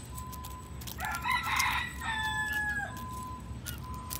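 A rooster crows once, starting about a second in: a rough first part, then a long held note that dips at the end, about two seconds in all.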